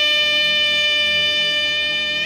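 Alto saxophone holding one long, steady note.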